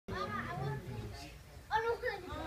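Children's voices talking and calling out, with one louder call near the end.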